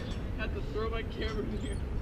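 Faint speech at a distance, a few short phrases, over a steady low rumble of wind on the microphone.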